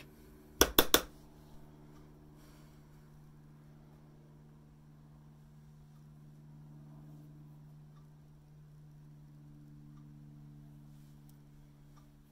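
Three sharp clicks in quick succession about a second in, then a faint, steady low hum in a quiet small room.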